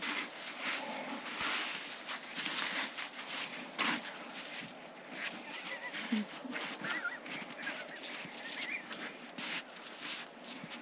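Snow shovels scraping and crunching into deep snow, an uneven run of short scrapes, with a few faint short high chirps in the second half.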